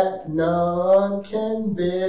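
A man singing a slow gospel hymn solo, holding each note for about a second with short breaks between phrases.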